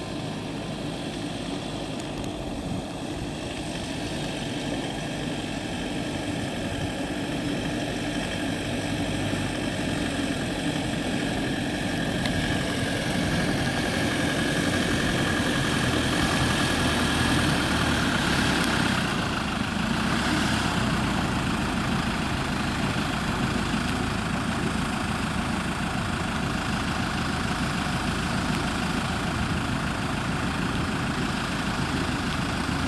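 Engines of several 4x4 off-road vehicles running at low speed in a slow convoy, rising gradually in loudness to a peak about halfway through, then holding steady.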